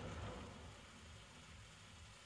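Near silence: faint room tone, with the tail of a spoken word fading out at the start.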